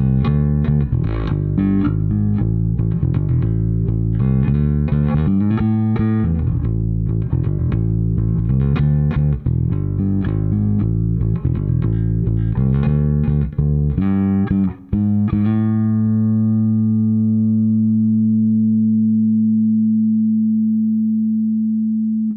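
Fender Precision bass played fingerstyle with a clean tone through a Tech 21 DP-3X SansAmp bass pedal, its compressor turned up to about three o'clock. A run of notes is followed, about 15 seconds in, by one low A held for about six seconds at a nearly even level: the compressor is holding the note and sustaining it.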